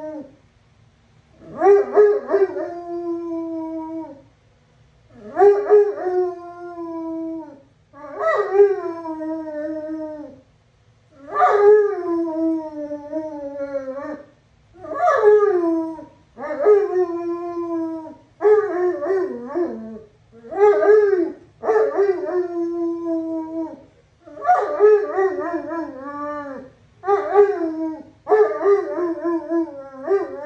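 Great Pyrenees dog howling, a dozen or so drawn-out howls with short breaths between. Each howl starts high and slides down in pitch, and the later ones come quicker, shorter and more wavering.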